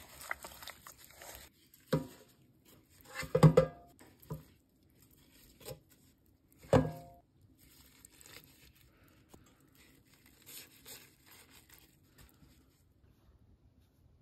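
A gloved hand handling raw, seasoned pork ribs: soft crinkling and squishing handling noise with a few short louder knocks. The loudest comes about three and a half seconds in, another near seven seconds.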